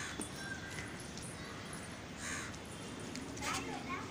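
A bird calling with harsh caws, loudest near the end.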